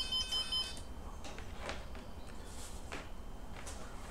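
Mobile phone ringtone, a high electronic melody of stepping tones, cut off less than a second in as the incoming call is answered. After that come a few faint handling rustles and clicks.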